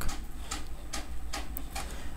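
A few faint, sharp ticks, spaced irregularly, over a low steady hum.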